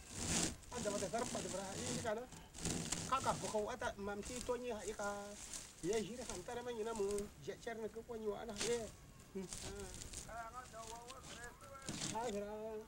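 Men talking to each other, not in English, with dry woven straw matting rustling and crackling now and then as it is handled and sewn.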